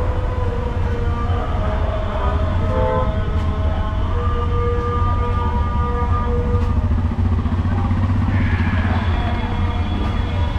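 Busy street traffic: auto-rickshaw and car engines running close by, giving a steady low rumble, with several held tones over it lasting a second or two each.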